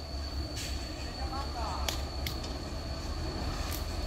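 Low, steady rumble of a diesel truck engine idling at a distance, with a thin steady high whine over it.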